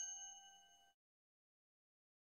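A bright, bell-like chime from an intro jingle rings on with several clear tones and fades out about a second in, followed by silence.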